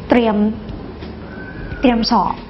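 A woman's speaking voice: a short drawn-out syllable with a slightly falling pitch, a brief pause, then speech again near the end.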